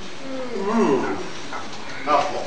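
A person's drawn-out voiced call, wavering and then sliding down in pitch, lasting about a second and loudest near the middle.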